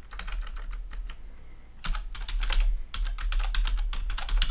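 Typing on a computer keyboard: quick runs of key clicks, with a pause of about a second after the first run.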